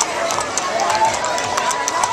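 Horses' shod hooves clopping on a paved street at a walk, several short clicks a second, under steady crowd chatter.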